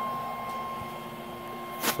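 MPT-7210A MPPT solar charge controller running while charging, a steady hair-dryer-like whir with a high whine held over it.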